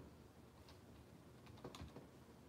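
Near silence with room tone and a few faint, light clicks: one early, then a short cluster near the end.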